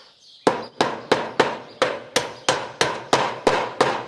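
A hammer driving a small flat-headed nail through steel roof flashing into timber: about eleven sharp, evenly spaced blows, roughly three a second, starting about half a second in.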